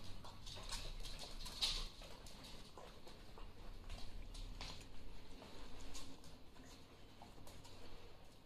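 A puppy lapping water from a steel bowl, then its paws pattering on the floor: faint, irregular small clicks.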